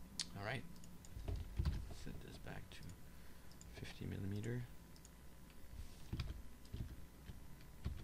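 Scattered, irregular computer keyboard keystrokes and mouse clicks, with a short wordless murmur of voice near the start and again about four seconds in.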